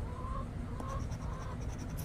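A hen calling in short, even notes about every half second, which the owner puts down to another hen laying an egg. Under it, the faint scrape of a coin on a scratch-off ticket.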